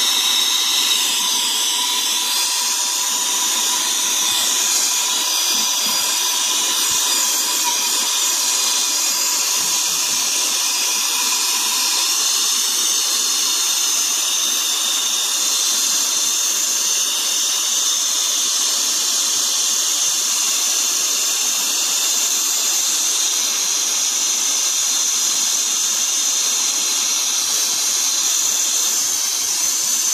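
Torch flame hissing steadily as it heats a brazed copper refrigerant line joint on a compressor to sweat it loose.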